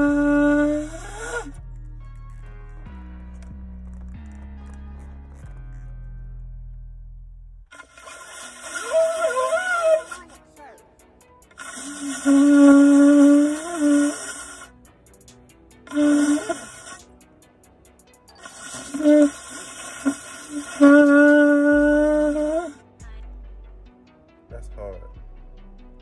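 A shofar being blown by a beginner in a series of blasts with pauses between. The first blast breaks off rising in pitch about a second in. After a long pause comes a wavering, unsteady attempt, then a steady held blast, two short toots and a final longer blast that rises in pitch as it ends, each with a breathy hiss.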